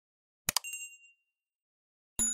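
Animation sound effect about half a second in: a quick double click followed by a short, bright chime that rings out and fades within about half a second, marking an animated cursor clicking a subscribe button.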